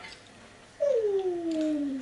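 A long, drawn-out vocal moan that starts nearly a second in and slides steadily down in pitch for about two seconds.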